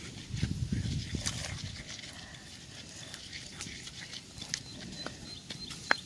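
Stone pestle pounding and grinding a wet mash in a stone mortar: irregular dull knocks and scraping clicks, busiest in the first second or so, with one sharp knock of stone on stone near the end. A faint, thin, steady high tone runs under the second half.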